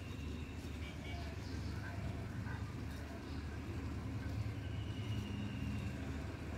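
Outdoor background: a steady low rumble with faint distant voices.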